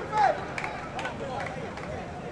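Unintelligible voices calling and shouting across an open football pitch, the loudest a short shout just after the start, with a few sharp knocks in between.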